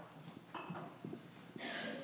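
A quiet pause in a hall: faint, scattered light knocks and rustles, with a brief soft hiss near the end.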